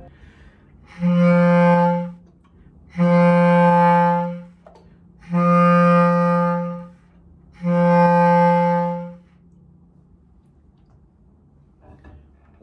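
Bass clarinet playing an open G (sounding concert F) four times, each a steady held note of about a second and a half with short breaks between.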